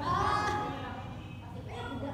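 Women's voices: one drawn-out, rising vocal call about half a second long at the start, then fainter chatter.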